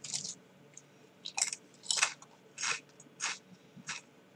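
A person chewing a crunchy snack, about five short crunches in the mouth.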